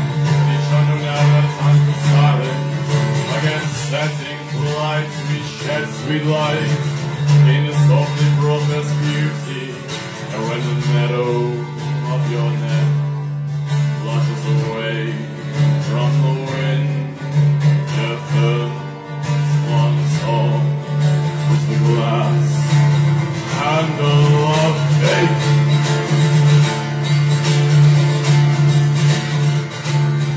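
Acoustic guitar played live, a continuous passage of picked and strummed notes.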